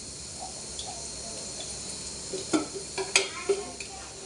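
Oil sizzling steadily in a frying pan as battered vadas fry, with two sharp clinks of a utensil past the middle.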